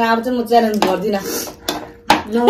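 A metal spoon clinking against a bowl a few times while eating, with a woman's voice over the first second.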